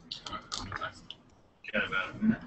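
A quick run of sharp clicks from a laptop's keys and trackpad as a web demo is navigated, followed near the end by a brief, soft voice.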